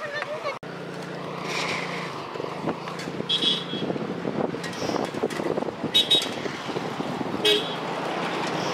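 A bicycle bell rung three times, short high rings about three, six and seven and a half seconds in, over a low engine hum near the start and voices.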